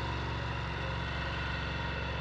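Heavy construction-machinery engine running steadily at an even pitch, at a site where steel sheet piling is being installed.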